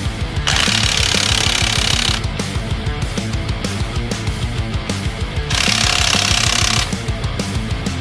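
DeWalt cordless impact wrench hammering lug nuts tight on a truck wheel in two bursts, one about half a second in and a shorter one about five and a half seconds in, over loud rock music.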